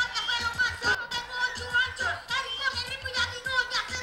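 Live reggaeton beat with a repeating bass pattern, and a young boy rapping over it into a microphone.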